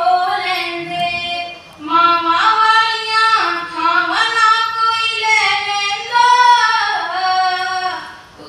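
A woman singing a slow melody in long held notes that step between pitches.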